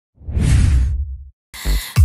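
A single whoosh transition sound effect, about a second long, its low rumble trailing a moment after the hiss dies away. Music starts near the end.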